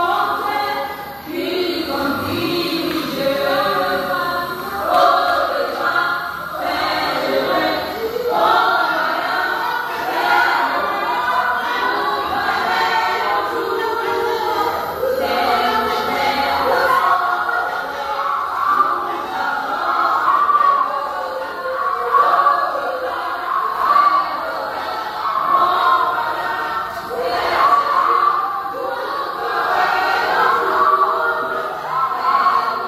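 A large group of voices singing together, a church congregation or choir singing without pause.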